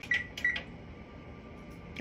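Two short electronic beeps about a third of a second apart, as a digital timer is set, followed by quiet room noise.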